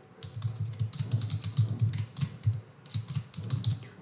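Typing on a computer keyboard: a quick, irregular run of key clicks, with a short pause a little past halfway.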